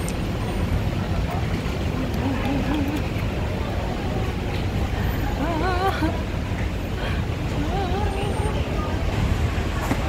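Steady low outdoor rumble of traffic and background noise, with faint voices of people nearby rising now and then.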